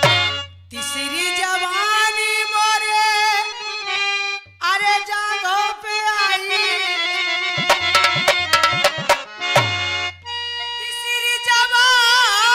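Harmonium playing a melody of long held notes, joined by a run of dholak strokes past the middle; near the end a woman's voice comes in singing.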